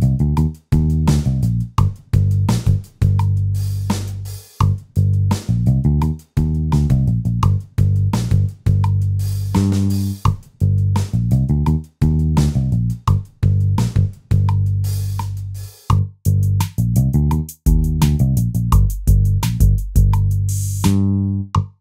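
GarageBand software instruments playing back: an improvised bass-guitar line under a quantized acoustic drum-kit pattern with a busy hi-hat, as a steady groove.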